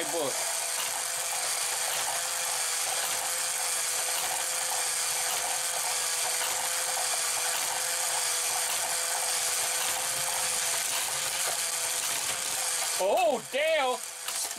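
Motorized spiral lift of a Hot Wheels Power Tower running steadily: its plastic gears and spiral give a constant whine over a dense mechanical chatter as it carries cars up the tower.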